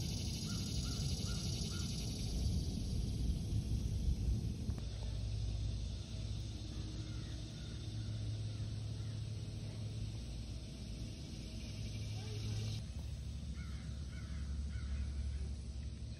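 Outdoor ambience picked up by a phone microphone: a steady low rumble of wind or handling noise, with faint short bird calls, four quick ones near the start and a few more in the middle and near the end. A high insect-like hiss is present for the first few seconds and again near the end.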